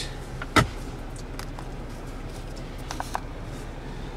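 Center console armrest lid shutting with one sharp knock about half a second in, followed by a few faint clicks, over a steady low background noise in the car cabin.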